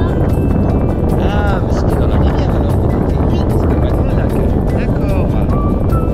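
Wind buffeting the camera's microphone during a tandem paraglider flight: a loud, steady low rush. A few faint pitched sounds rise and fall over it.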